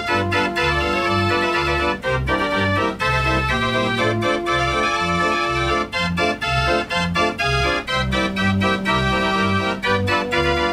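Dutch street organ, a mechanical pipe organ, playing a tune: held pipe notes over a bass that alternates about twice a second.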